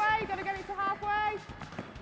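Voices calling out during the drill, quieter than the coach's nearby speech, with a few faint knocks on the hall floor in the second half.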